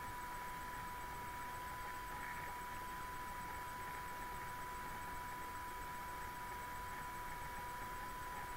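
Steady background hiss with a constant high-pitched whine, unchanging throughout: the room and recording noise of a quiet webcam setup, with no speech or music.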